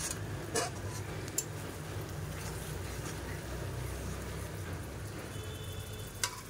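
Spiced masala frying in oil in a steel wok, a soft steady sizzle with a low hum underneath. A metal spatula clicks against the pan about half a second and a second and a half in.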